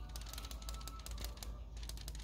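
Faint, rapid ticking and scratching from kittens moving about on a fabric couch, over faint background music with a few held tones.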